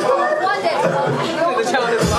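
Overlapping talk and chatter from several people in a crowded hall.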